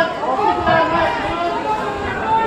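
Spectators' voices close by, several people talking and calling out over one another.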